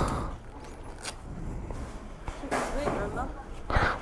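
Faint, low-level talk over a low background rumble, with a single sharp click about a second in.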